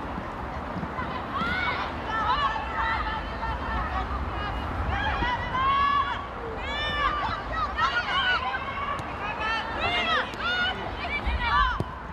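Several high-pitched voices calling out and squealing over one another, over a steady low rumble.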